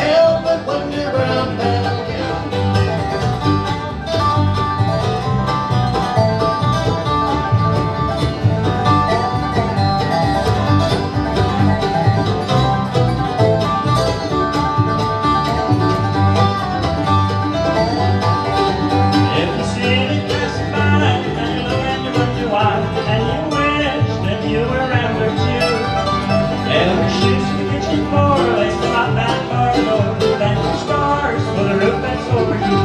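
Live acoustic bluegrass band playing an instrumental break with no singing: banjo, guitar, mandolin, dobro and upright bass, with steady plucked rhythm throughout.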